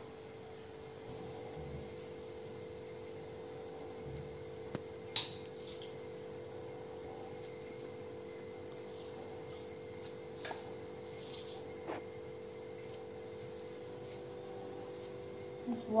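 Knife cutting through a soft cake on a steel plate, the blade giving a few faint clicks against the plate and one sharper click about five seconds in, over a steady low hum.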